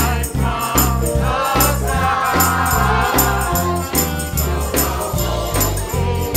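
A group of voices singing a hymn verse to instrumental accompaniment, over a bass line that moves from note to note. Light percussion ticks keep a steady beat high above the voices.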